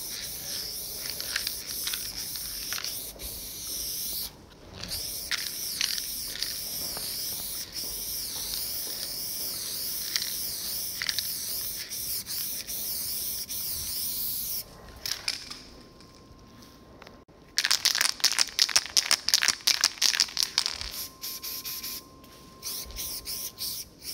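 Aerosol spray-paint can hissing in long, steady sprays, with a short break about four seconds in. After a quieter pause, the last few seconds hold loud, rapid rattling strokes.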